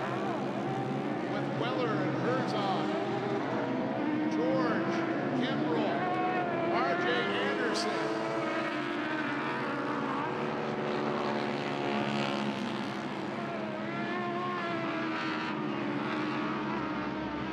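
Several racing UTV (side-by-side) engines running hard together, their pitch rising and falling over and over as the drivers work the throttle.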